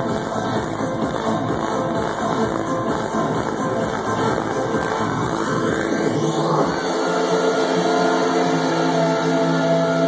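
Loud house music DJ mix played over a nightclub sound system. About six seconds in, the kick drum and bass drop out, leaving held synth chords.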